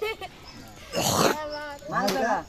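Boys' voices talking and calling out in short bursts, loudest in a shout about a second in.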